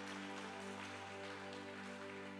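Soft keyboard music: quiet chords held steady, with no singing.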